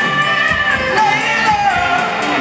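Live rock band playing: a lead singer holds long notes, dropping in pitch near the end, over electric guitars and a steady drum beat.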